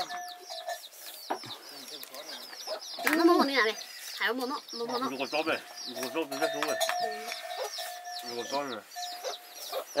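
Chickens: a brood of chicks peeping in rapid, high, falling cheeps, several a second, with an adult hen clucking among them.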